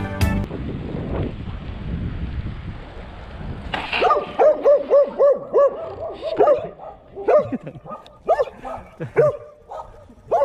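A dog barking repeatedly: a quick run of barks starting about four seconds in, then scattered barks to the end. Before the barking, a steady rushing noise.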